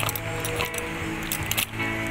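Electronic keyboard playing held organ-like chords through a small loudspeaker, with a few sharp clicks about half a second in and again around a second and a half.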